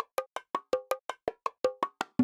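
Song intro: a quick, steady pattern of short pitched percussion hits, about five or six a second, before any vocals come in.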